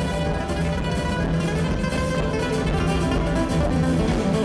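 Live band playing instrumental music, with a nylon-string acoustic guitar played over bass and a steady rhythm.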